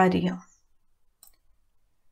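A voice speaking for about half a second, then near silence broken by one faint click a little past the middle.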